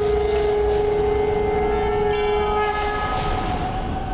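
Dramatic background score: held, horn-like drone chords with no melody. A new, higher chord comes in about two seconds in while the lower drone fades out near the three-second mark.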